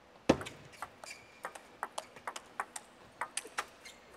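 A table tennis rally: the ball clicks sharply off the rackets and the table in a quick, uneven run of about a dozen hits, after one loud knock about a quarter second in.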